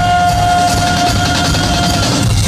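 Loud live band music with a drum kit and electric guitar, and one long note held steady over them until near the end.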